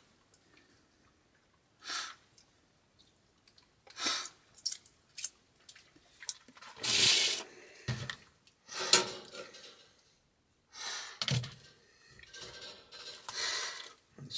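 A metal utensil scraping and clinking against a frying pan as cooked food is dished out, in scattered short bursts with a sharp clink about nine seconds in.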